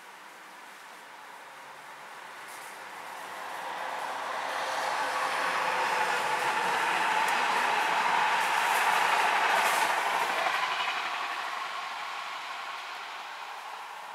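A Transilien train passing: a BB 17000 electric locomotive with RIB stainless-steel coaches. Its rumble swells from about two seconds in, peaks in the middle with a few sharp clicks, then fades away.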